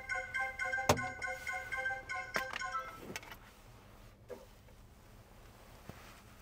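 A quick run of short electronic beeps in a few pitches, lasting about three seconds, with a sharp click about a second in; then only a low background.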